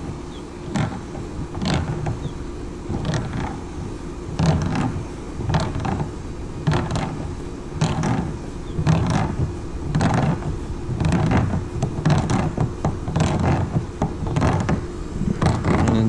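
A plastic pig nipple drinker with taped threads being screwed into a drilled hole in a plastic water tote with channel-lock pliers. It creaks in short strokes, about once a second, as it is tightened.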